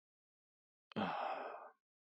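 Silence, then a man's short breathy sigh about a second in, lasting under a second.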